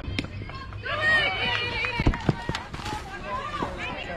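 High-pitched voices of softball players calling out and cheering, bunched in the middle, with several sharp pops, the loudest about halfway through.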